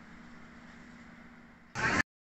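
Faint steady room tone with a low, even hum. Near the end, a short, loud rush of outdoor street noise breaks in and cuts off abruptly after about a quarter second.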